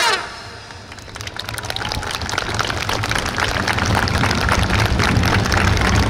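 A brass band's final chord breaks off and rings out briefly, then audience applause builds up and keeps going over a low rumble.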